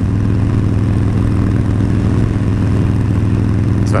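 Harley-Davidson Sportster Forty-Eight 1200's air-cooled V-twin running at a steady cruising speed: an even, low engine drone that holds its pitch, with road and wind noise over it.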